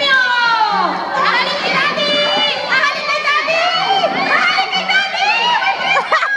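A group of children shouting and squealing at play, their high voices overlapping, with one long shriek falling in pitch at the start.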